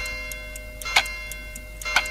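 Countdown sound effect: a sharp clock-like tick once a second over a steady held tone, three ticks in all.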